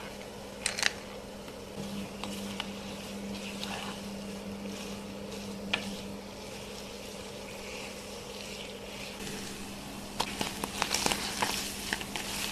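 Onions frying in a nonstick pan with a steady soft sizzle. A wooden spoon stirs and knocks against the pan, with a few sharp clicks and a busier run of knocks and scrapes in the last two seconds.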